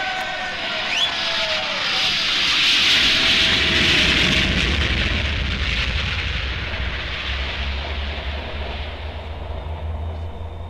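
Aircraft engine sound effect played from a vinyl record: a roar that swells to its loudest about three seconds in, with a deep rumble joining it, then slowly fades away.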